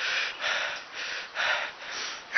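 A man breathing hard through his mouth close to the microphone, short rasping breaths about two a second: winded from climbing a tree.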